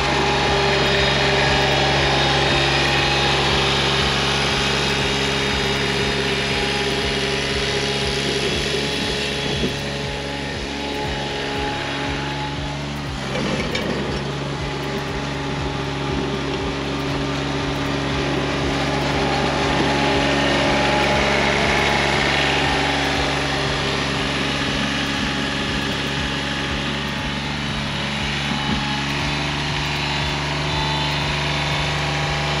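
Diesel engine of a Toro Greensmaster 3250D ride-on greens mower running steadily as the mower is driven, dipping slightly in level about halfway through.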